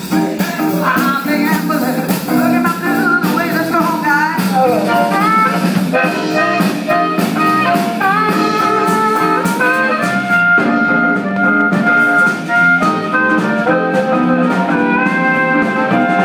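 Live blues band: an amplified blues harmonica, played cupped to a handheld microphone, solos with bending, sliding notes and one long held note around the middle, over electric guitar and drums.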